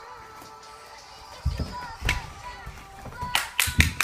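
Background music playing in a room, with a few sharp thuds and slaps as bodies and feet land on a gym mat over a wooden floor during tumbling. The loudest hits come in a quick cluster near the end.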